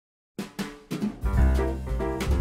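Digital silence, then background music begins about half a second in with a few sharp drum hits, and the full band with bass comes in about a second later.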